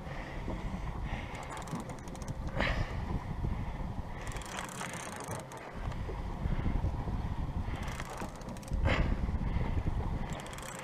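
Fishing reel being cranked to bring in a hooked fish, with a fine mechanical ticking that comes and goes, over a low wind rumble on the microphone.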